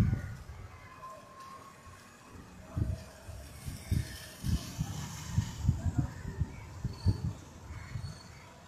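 Wind buffeting the phone microphone in a string of low, irregular gusts, starting about three seconds in, over a faint hiss of rain.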